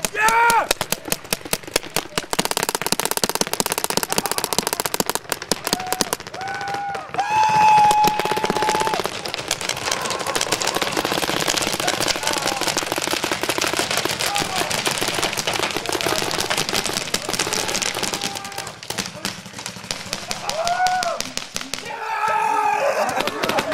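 Many paintball markers firing in rapid, overlapping strings of shots, thinner for the first couple of seconds and then near-continuous. Shouts ring out over the firing near the start, a long one about seven seconds in, and another near the end.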